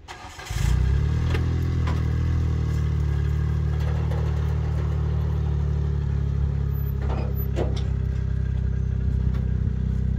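John Deere Gator utility vehicle's engine starting about half a second in, then running steadily at idle as it backs off a trailer.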